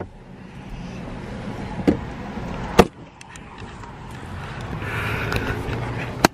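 A car door being unlatched and opened, with two sharp clicks about two and three seconds in, over steady outdoor traffic noise that swells toward the end.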